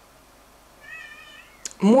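A brief high, wavering, pitched cry lasting about half a second, quieter than the speech that follows, then a single sharp click just before a woman starts talking.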